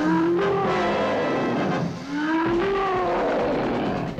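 Film creature roar sound effect: two long rising cries over a rough, noisy rumble, the first at the start and the second about two seconds in.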